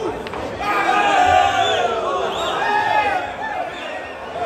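A single click from the table as the shot is struck, then a crowd of spectators shouting and cheering a potted ball that levels the score, loudest about a second in and dying down near the end.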